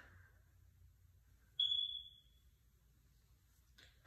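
A single high, clear ping about one and a half seconds in, starting suddenly and dying away over about a second, against near silence.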